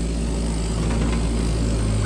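Mini excavator's diesel engine running steadily as the bucket digs a trench through tree roots.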